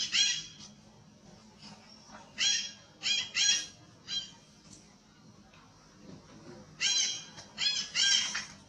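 Young long-tailed macaque screaming in distress while an adult grips it. The high-pitched cries come in short bursts: one at the start, three or four close together in the middle, and two more near the end, with quiet gaps between.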